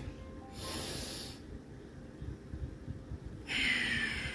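A man drawing a deep breath in, about half a second in, then breathing out audibly and more loudly near the end, as part of a yogic breathing exercise.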